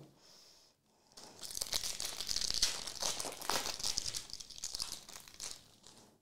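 Foil trading-card pack wrapper being torn open and crinkled by hand. The dense crinkling starts about a second in and runs until just before the end.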